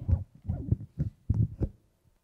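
A quick run of about six low, muffled thumps on a clip-on lapel microphone, each a puff or knock close to the mic, roughly three a second.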